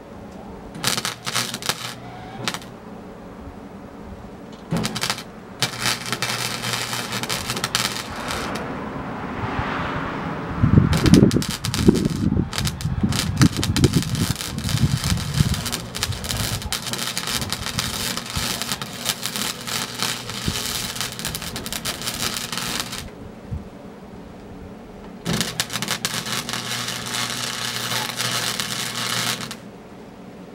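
Wire-feed welder crackling as it lays welds on a steel truck frame. Three short tacks come in the first few seconds, then long continuous runs with brief stops. A burst of low thumps comes partway through.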